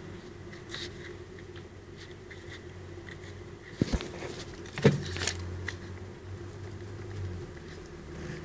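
Steady low background hum in a small room, with a few soft knocks and rustles about four and five seconds in from the paper and camera being handled.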